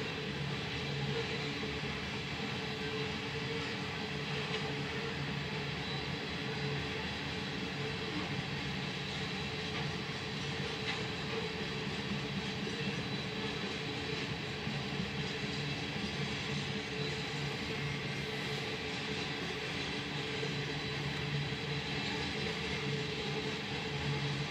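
Freight train cars rolling steadily past a grade crossing, a continuous rumble of steel wheels on the rails.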